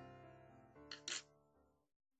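Soft piano background music fading out, with two short noisy clicks about a second in.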